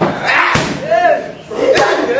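Boxing-gloved punches smacking leather Thai pads: three sharp hits, with short vocal calls in between.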